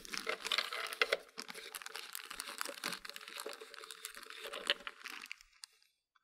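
Plastic bag crinkling with small plastic clicks and scrapes as a Clack water-softener bypass valve is worked off the control valve by hand. The handling noise dies away about five seconds in.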